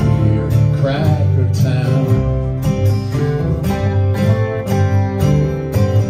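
Live country band playing an instrumental passage. Strummed acoustic guitars and upright bass run under a hand drum's steady beat, with an electric guitar line wavering in about a second in.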